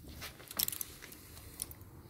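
Faint metallic clicking and scraping of a feeler-gauge set as the 0.15 mm blade is slipped in between a rocker-arm adjuster and the valve stem on a Gilera GP800's cylinder head, checking valve clearance. A quick cluster of clicks comes about half a second in, with a few lighter ticks after.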